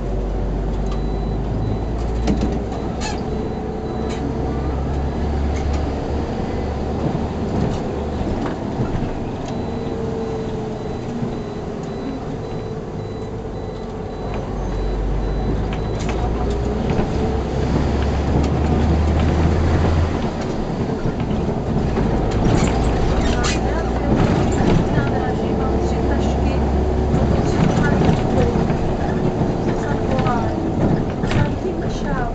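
Inside a SOR C 9.5 diesel bus on the move: the engine and driveline run under load, their pitch rising and falling several times with the changing speed. Clicks and rattles from the cab come thicker near the end.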